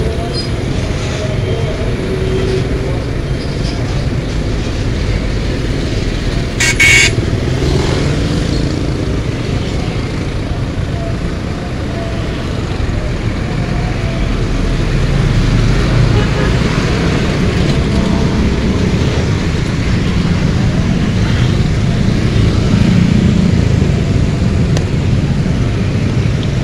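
Heavy road traffic: a steady low rumble of container trailer trucks and motorcycle engines passing close by. A short, sharp burst stands out about seven seconds in, and the rumble grows louder in the second half.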